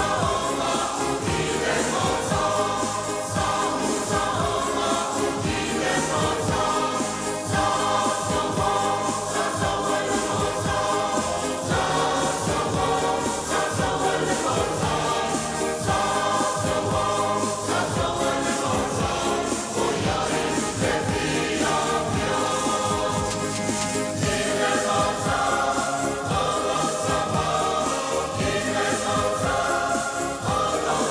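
A mixed choir of men and women singing a Samoan hymn in harmony, running without a break.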